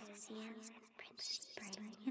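Soft ghostly whispering voices, quieter here than the lines around them, with brief breathy hisses.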